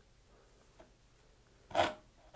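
Near silence, then near the end a single short stroke of a dovetail saw across the top corner of a wooden board, starting the kerf.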